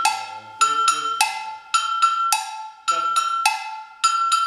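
Cowbell struck in a repeating rhythmic figure marking the pulse: one stroke with a lower ring followed by two quicker, higher strokes, the cycle coming round about every second, each stroke ringing on briefly.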